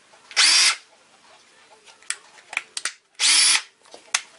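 DeWalt DCD780M2 18 V cordless drill/driver triggered twice in short bursts, its motor whirring briefly up to speed and winding straight back down each time, about three seconds apart. A few light clicks of handling come between the two runs.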